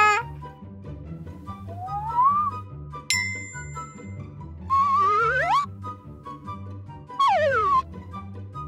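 Light cartoon background music with a repeating low bass pattern, overlaid with cartoon sound effects: a rising sliding tone about two seconds in, a bright bell-like ding at about three seconds that rings on for about a second, a wavering sliding tone near the middle, and a quick falling glide near the end.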